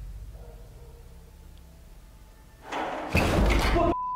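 A loud burst of knocking and rattling, like a doorknob being rattled, starts about three seconds in and lasts about a second. It comes after a low droning bed that fades away.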